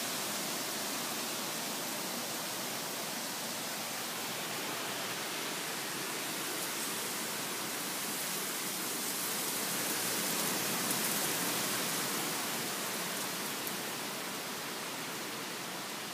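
Steady rushing hiss of strong wind in the trees, swelling a little past the middle as a gust comes through.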